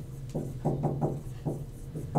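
Whiteboard marker writing on a whiteboard: a quick run of short taps and strokes as characters are written, over a steady low hum.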